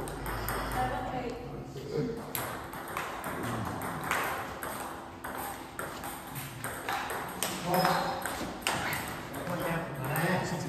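Table tennis ball clicking off bats and table in quick rallies, with more ball clicks from a match at a neighbouring table.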